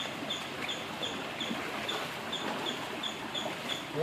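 Shallow water running over rocks, a steady rush, with a faint high chirp repeating about three times a second throughout.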